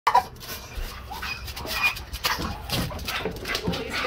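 Staffordshire bull terrier giving short, high whimpers as it strains eagerly on its lead, over a run of scuffing clicks and footsteps.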